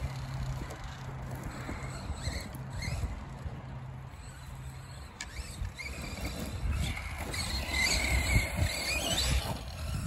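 Arrma Big Rock 3S RC monster truck's brushless electric motor whining as it is driven, the pitch rising and falling with the throttle, over a low rumble of tyres and drivetrain. It gets louder in the second half, with a rising whine near the end.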